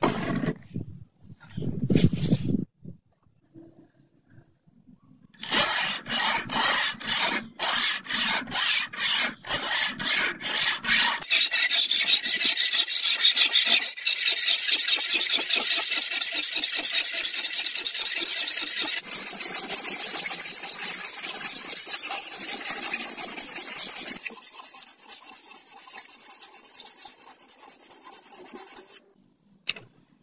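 Steel sword blade being sharpened by hand, a flat abrasive tool scraped along its edge: a few short scrapes at first, then separate strokes about two a second, then fast continuous strokes that stop just before the end.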